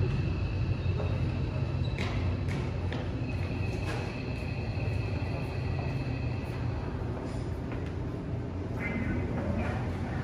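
Seoul Subway Line 5 train braking into the station behind the platform screen doors. A steady low rumble eases off as it slows to a stop, with a thin high whine in the middle and a few clicks.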